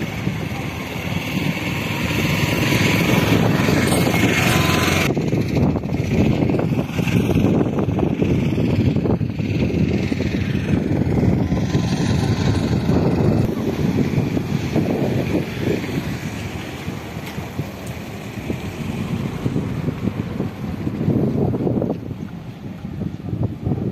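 Wind rumbling on the microphone over the sound of road traffic, with extra hiss in the first few seconds that stops abruptly.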